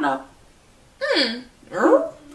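A woman's voice: a word, a short quiet pause, then two short wordless vocal sounds, the first falling in pitch and the second rising.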